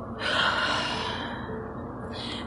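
A woman's long sigh: a breath out that swells in the first half-second and fades away over about a second and a half.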